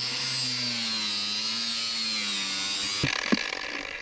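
Handheld DeWalt power cutting tool running at high speed as it cuts into a sewer pipe, a steady high whine whose pitch sags slightly under load. It stops about three seconds in, followed by a few knocks.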